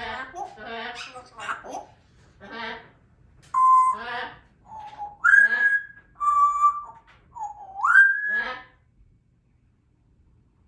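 African grey parrot babbling speech-like chatter, then whistling: several short steady whistle notes mixed with more chatter, and a rising whistle near the end before she falls quiet.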